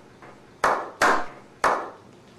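A slow clap: three separate hand claps with uneven gaps, each sharp and dying away quickly with a short ring.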